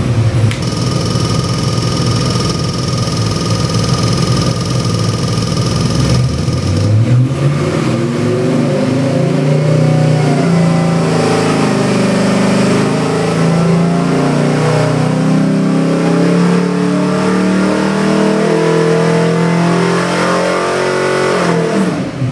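Chevy 350 small-block V8 crate engine with cast iron heads running on an engine dyno: it runs steadily for about six seconds, then revs up and makes a dyno pull, its pitch climbing steadily under load from about 3,000 to 4,500 rpm before dropping off right at the end.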